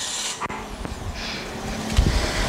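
Toyota Yaris 1.2-litre four-cylinder petrol engine idling steadily just after being started, with the bonnet open.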